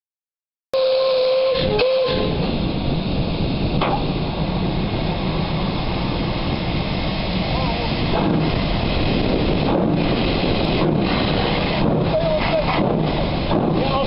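Ex-Caledonian Railway 0-6-0 steam locomotive No. 828 gives one whistle blast of about a second and a half, a single steady tone that dips briefly in pitch. A loud, steady hiss of steam from the engine follows.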